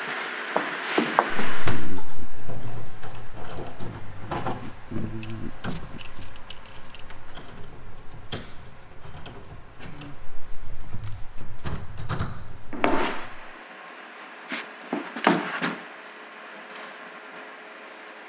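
Clamps and a wooden batten handled on a fiberglass-and-foam bulkhead while it is adjusted plumb: scattered knocks, clicks and rubbing, loudest about two seconds in, over a low rumble that stops about two-thirds of the way through.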